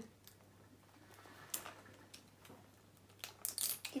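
Faint crackles and clicks of plastic packaging on a small toy capsule being handled and peeled open, a few scattered at first and coming thicker near the end.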